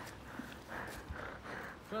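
Footsteps of people walking on pavement, a few soft steps through the middle, with a voice starting at the very end.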